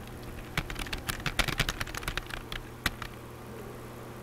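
Typing on a computer keyboard: a quick run of key clicks from about half a second in until about three seconds in, over a faint steady hum.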